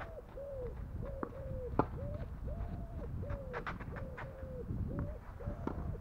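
Tennis rally on a clay court: sharp knocks of racket strikes and ball bounces, the loudest about two seconds in. Behind it a bird calls over and over in short, mid-pitched notes, about two a second.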